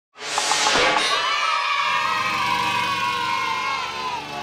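Opening intro jingle: a sudden burst of sound with a few short notes, then a long held cry of cheering children's voices over music, slowly falling in pitch.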